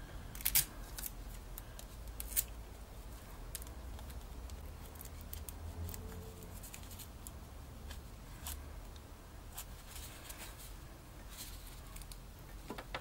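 Scattered small clicks and rustles of hands handling a copper wire coil wound around a cardboard tube, pressing the turns into place, over a faint low hum.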